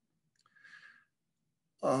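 A man's short, faint breath about half a second in, during a pause in his speech.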